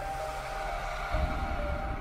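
Logo intro music: sustained tones with a deep bass hit about a second in.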